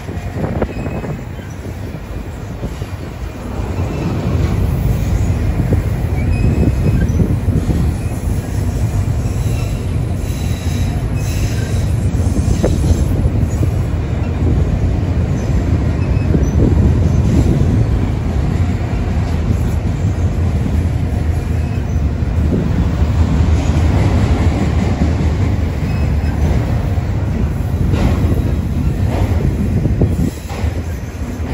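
Freight train of double-stack container well cars and autorack cars rolling past close by: a steady low rumble and rattle of steel wheels on the rails, growing louder about four seconds in.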